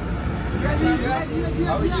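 Several voices calling out, over a steady low rumble of street traffic.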